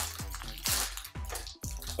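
Crinkling of a foil Pokémon booster pack wrapper being handled and opened, in a few short irregular crackles.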